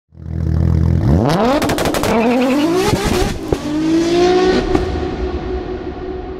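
An engine idling low, then revving up in rising sweeps from about a second in, with crackling pops. A sharp crack comes near the middle, then a steady high note that fades away near the end.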